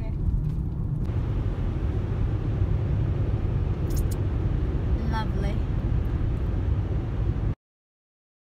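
Steady low road and engine rumble heard from inside a moving car's cabin, cutting off suddenly shortly before the end.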